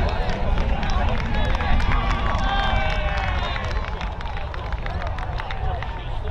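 Players and spectators calling out at a football ground, their voices indistinct and overlapping, over a steady low rumble.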